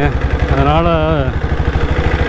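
Royal Enfield diesel Bullet's single-cylinder diesel engine running as the bike rides along at a steady pace, a fast, even beat of firing pulses.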